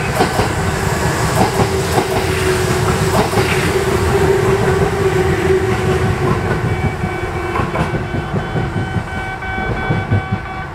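A Kintetsu 2050 series semi-express electric train passing through the station without stopping, its wheels clattering over the rail joints, with a steady whine held for several seconds in the middle. The sound eases off after about seven seconds as the train leaves.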